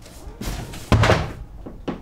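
Hard strokes of a long-handled broom knocking and thudding on the floor: three knocks, the loudest about a second in.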